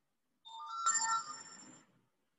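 Short electronic phone tone of a few steady notes: a softer note about half a second in, then a louder, brighter one, fading out over about a second.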